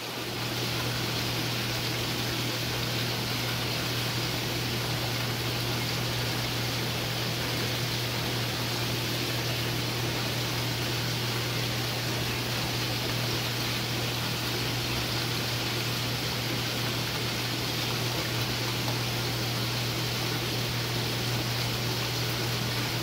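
Steady rushing noise with a constant low hum from a saltwater aquarium system: water circulating through the tank's plumbing, driven by a running pump.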